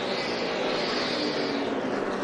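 NASCAR Truck Series race trucks' V8 engines running at full throttle through a turn, picked up by the broadcast's track microphones. The engine sound swells and then eases off as the trucks go by.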